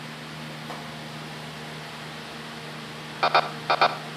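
A steady low hum with faint background hiss, and a few short pitched bursts near the end.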